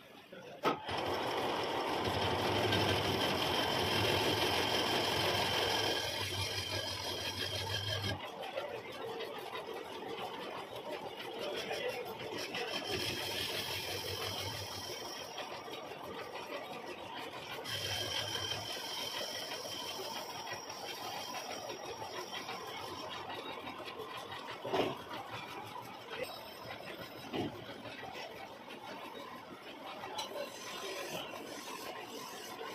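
Metal lathe running, a steady hum with a high whine that sets in about a second in and comes and goes in stretches, with a few short clicks near the end.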